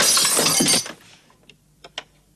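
Glass shattering: one loud crash of breaking glass lasting under a second, then fading, followed by a few faint clicks.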